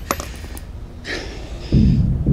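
Film sound effects: a couple of sharp small clicks at the start, then a deep low hit that swells in near the end.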